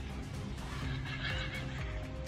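Background music with held notes, and an animal's cry over it about a second in.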